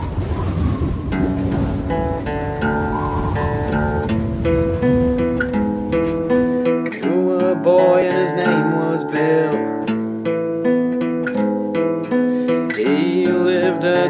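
Acoustic guitar picking the intro of a folk song over a low rumbling noise that cuts out about seven seconds in. A man's singing voice comes in around then.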